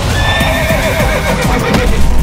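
A horse whinnying: one quavering neigh that starts about half a second in and lasts just over a second, over the low knock of hooves.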